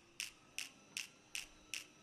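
Even ticking: sharp, light ticks about two and a half a second, five in all, over a faint steady hum.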